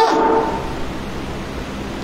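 Steady background hiss with a faint low hum during a pause between sentences. The last word's tone rings on briefly and dies away in the first half second.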